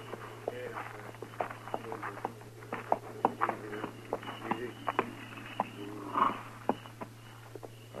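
Radio-drama sound effects of a horse being led up: scattered, irregular hoof clops and knocks with shuffling in between, over a steady low hum from the old recording.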